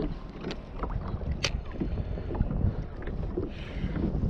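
Wind buffeting the microphone over a kayak on open water, with water lapping at the hull and a few small knocks, one sharper tick about one and a half seconds in.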